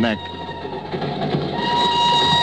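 Sound effect of a moving train: a steady rushing noise, with the train whistle sounding a sustained chord from about a second and a half in.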